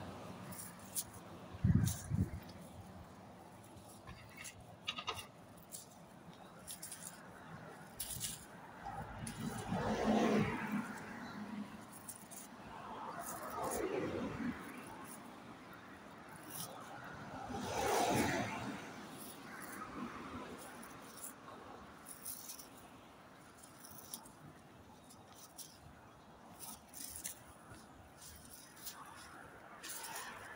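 Street traffic: several vehicles pass close by one after another, each swelling up and fading over a couple of seconds, with a couple of sharp thumps about two seconds in.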